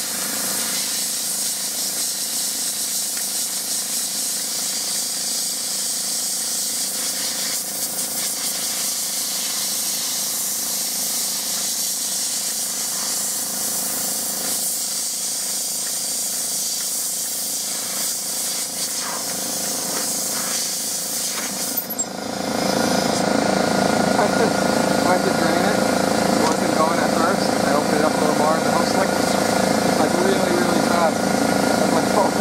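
Sandblaster nozzle hissing steadily as abrasive strips rust and paint off a Honda ATC 350X axle. About 22 seconds in, the hiss stops and a louder, lower mechanical running noise takes over.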